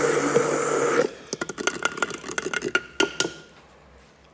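Immersion blender running in a glass jar of gooseberry, cucumber and shallot jam, cutting off about a second in. A string of light clicks and taps on the glass follows.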